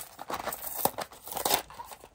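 Small thin-card minifigure box being torn open by hand: irregular tearing and crinkling of the cardboard flap.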